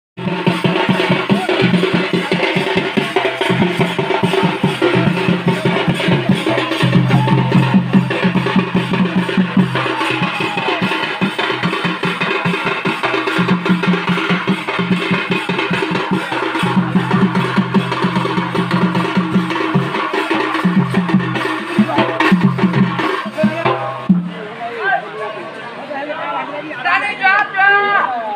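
Live Odia folk drumming: a barrel drum (dhol) and a hand-held frame drum (changu) beaten in a fast, dense rhythm, with a held melodic line above them. The music stops abruptly about 24 seconds in.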